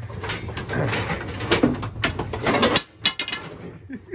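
Cardboard boxes and wooden boards being shifted and dragged, with irregular knocks and scraping; a low hum underneath stops a little before the end.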